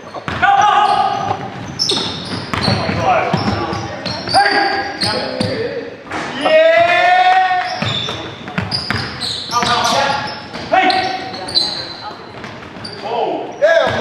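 Indoor basketball play echoing in a gym: the ball bouncing on the hardwood floor, players' shoes squeaking, and players shouting and calling out to each other.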